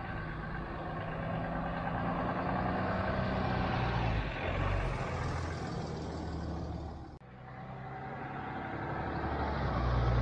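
Pickup truck driving past, its engine and tyre noise building as it approaches and passes close by around five seconds in. A sudden cut about seven seconds in, then the truck's engine and tyre noise building again as it approaches.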